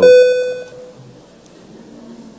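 Electronic tone of the legislative voting machine signalling that the vote is open: one steady pitched tone that fades out within the first second, leaving faint room noise.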